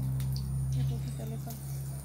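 Ripe bananas frying in hot oil in a pan, a steady fine crackling and spitting, over a steady low hum.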